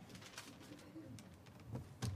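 Near silence: meeting-room tone with a few faint, soft low sounds and light clicks.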